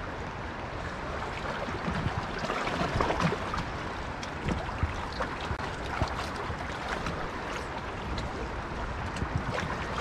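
River current washing around a drifting WaterMaster inflatable raft: a steady rush of moving water with a few small splashes and ticks.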